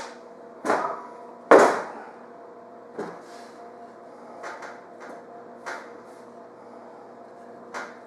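Wooden rolling pin and a ball of chilled shortbread dough knocking and rolling on a floured stainless-steel counter: a handful of separate knocks, the loudest about a second and a half in, over a faint steady hum.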